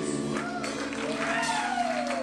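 The last chord of a live rock band's song ringing on from the guitar amplifiers as audience members start whooping and cheering.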